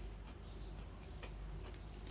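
A few faint, irregular light clicks over a low steady hum.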